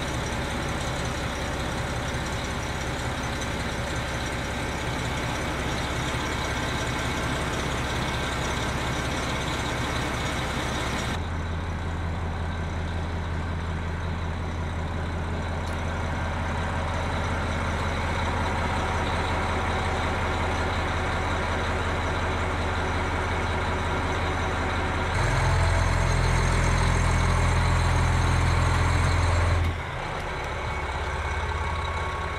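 KiHa 261 series diesel multiple unit idling, a steady low engine hum. The sound changes abruptly about 11 seconds in and again about 25 seconds in, when the hum grows louder and fuller until it cuts off just before the end.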